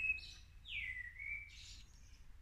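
A bird calling with whistled notes: a short high note at the start, then a note that slides down and holds steady for about a second.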